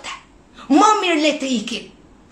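A woman's voice: one loud, drawn-out exclamation about a second long in the middle, with pauses either side.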